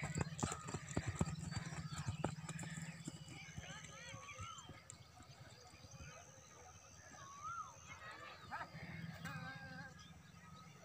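A horse galloping past on dry dirt, its rapid hoofbeats loudest in the first few seconds and then fading as it moves away.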